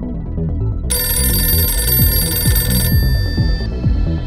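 A telephone bell rings once, for about two seconds starting a second in, then fades out, over synth music.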